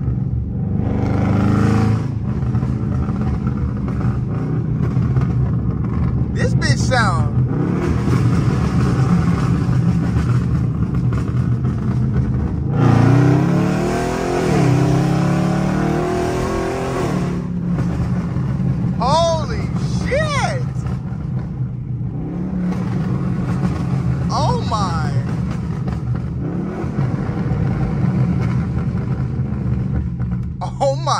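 Dodge Charger Scat Pack's 392 Hemi V8 running under way, heard from inside the cabin with the window down. About 13 seconds in it accelerates hard, the revs climbing, dropping at an upshift and climbing again, then it settles back to cruising and slowing.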